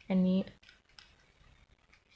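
Plastic Mastermorphix twisty puzzle being turned by hand, its layers giving a few faint clicks.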